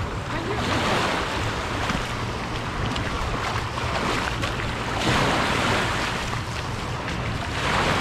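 Small waves lapping and washing up a sand and pebble shoreline, the noise of the surf swelling about three times as waves break, over a low steady rumble.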